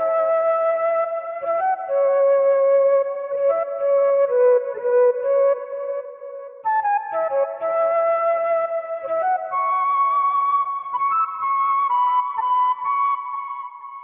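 Software flute (Arturia Analog Lab 4 flute preset) playing a counter-melody of held notes, run through a VHS-style tape effect and a low-pass filter that dulls its top end. The phrase starts over about seven seconds in and fades out near the end.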